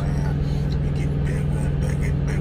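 Vehicle engine idling: a steady low hum and rumble heard from inside the cab.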